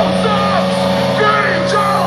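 Live rock band playing loudly, with sustained low notes held steady underneath and short pitched lines sliding above them.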